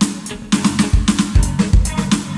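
Electronic drum kit (Roland TD-17 V-Drums) played in a steady pop groove of kick, snare and hi-hat, about one kick a second, along with the song's bass and band backing, with no vocals.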